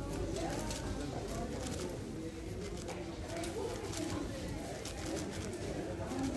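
A plastic 7x7x7 speedcube being turned rapidly by hand: a quick, irregular run of clicks and rattles from the layers snapping into place, over a low background murmur.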